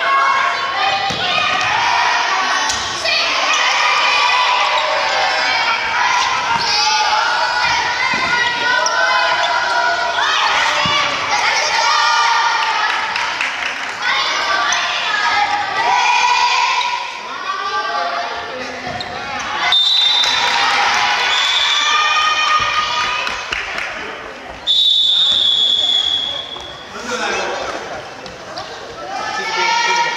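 Children's voices shouting and calling continuously in a reverberant gymnasium during a dodgeball game, with a rubber ball thudding on the wooden floor. A shrill whistle blast sounds about 25 seconds in, with a shorter one a few seconds before it.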